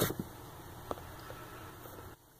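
Quiet room hiss with a few faint ticks and one small click about a second in, from a plastic action figure's leg and foot joints being worked by hand.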